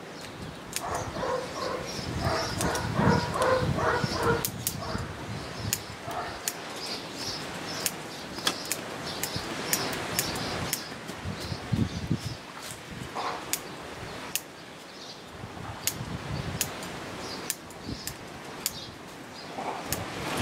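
Bonsai scissors snipping back the shoots of an elm bonsai, with many short sharp clicks at an uneven pace. There are some calls in the background in the first few seconds.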